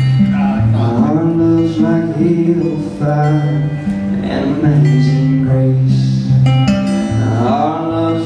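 Acoustic guitar strummed and picked, with a man's voice singing over it in long held notes.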